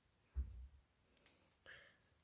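Faint handling sounds of crocheting a chain with a metal hook and yarn: a soft low bump about a third of a second in, then a faint click and a light rustle.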